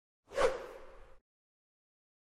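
A single whoosh sound effect for an animated logo intro: it swells sharply about a third of a second in and fades away by just over a second, with a faint steady tone under its tail.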